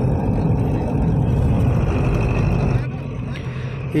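Vehicle engine and road noise heard from inside a vehicle driving a mountain road, a steady low rumble that drops away about three seconds in.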